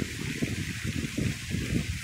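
Fountain jets splashing in a steady hiss, with wind buffeting the microphone in uneven low rumbles.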